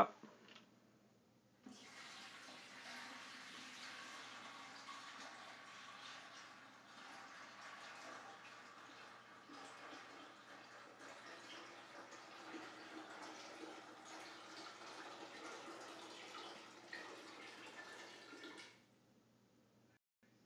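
Water poured from a large plastic water-cooler jug into the plastic top chamber of a Berkey Light gravity water purifier: a faint, steady pour that starts about two seconds in and stops shortly before the end.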